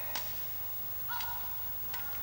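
Sharp ticks of badminton rackets striking the shuttlecock during a rally, a few hits about a second apart, over the low hum of a hushed arena. A thin steady high tone comes in about halfway through.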